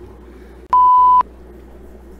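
A single electronic beep: a steady, high pure tone about half a second long that switches on and off abruptly, loud over a low steady hum. It is an edit-inserted bleep tone between outtakes.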